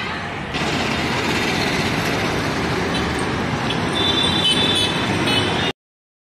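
Busy city street traffic noise from passing vehicles. A high-pitched vehicle horn honks over it in the second half, and the sound cuts off abruptly just before the end.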